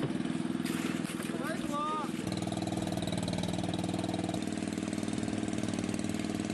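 Engine of a small fishing boat running steadily while the hydraulic net hauler is worked, its note shifting about two seconds in and again midway.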